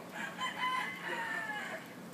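A single crowing call, like a rooster's, about a second and a half long, dropping slightly in pitch toward the end.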